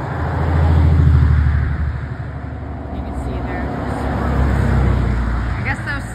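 Road traffic passing close by: a loud rumble of tyres and engine that swells about a second in and again around four to five seconds.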